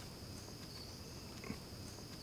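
Faint outdoor ambience of insects trilling steadily in one high band, swelling slightly at intervals, with a single soft tap about one and a half seconds in.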